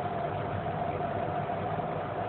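Steady mechanical background hum with a faint steady whine, unchanging throughout.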